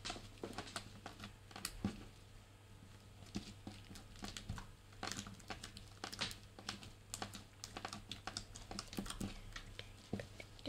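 Hands squishing, poking and stretching green slime, its trapped air popping in quick, irregular little clicks and squelches.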